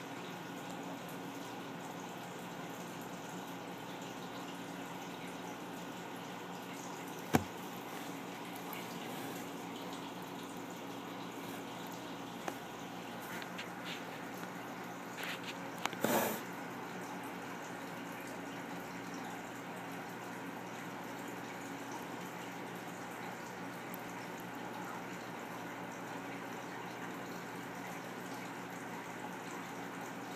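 A steady low hum with a faint hiss, broken by a single sharp click about seven seconds in and a brief rustle about sixteen seconds in.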